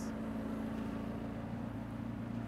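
Steady low mechanical hum, like a car engine idling.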